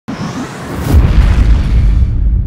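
Cinematic logo-sting sound effect: a swelling hiss that breaks into a deep boom about a second in, then a heavy low rumble that carries on.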